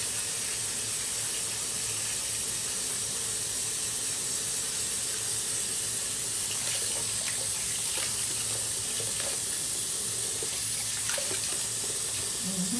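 Water running steadily from a bathroom sink tap, an even hiss with a few faint ticks in the second half.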